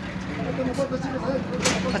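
A motor running with a steady hum, with people talking in the background.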